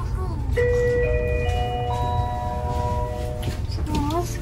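Train's onboard announcement chime: four rising notes struck one after another and held ringing together, over the low rumble of the moving train.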